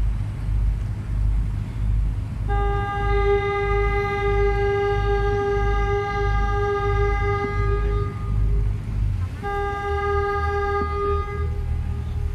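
A vessel's horn, one steady pitch, sounds a long blast of about five seconds and then, after a short gap, a shorter blast of about two seconds. Underneath, the water bus's engine rumbles steadily.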